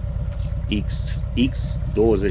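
2007 Harley-Davidson Electra Glide's Twin Cam 96 V-twin idling with a steady low rumble.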